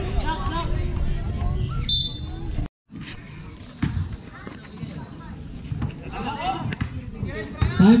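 Basketball bouncing a few times on a concrete court, with the voices of players and onlookers chattering around it. The sound cuts out completely for a moment just under three seconds in.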